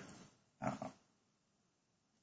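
Near silence, broken a little over half a second in by one short, quiet vocal sound from a man, a brief grunt-like hesitation sound.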